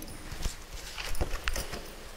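A few footsteps on a hard floor: several separate, irregularly spaced knocks.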